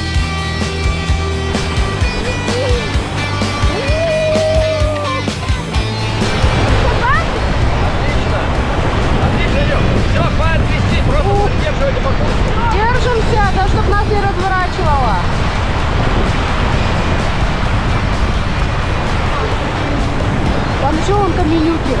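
Rock music with a beat for about the first six seconds gives way to a loud, steady rush of fast river water. Voices call out now and then.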